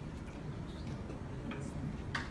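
Steady low room noise with a few faint sharp clicks, the clearest about one and a half seconds in.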